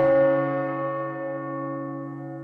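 A single struck bell tone: one stroke right at the start, then many overtones ringing on together and slowly fading, with a slight wavering.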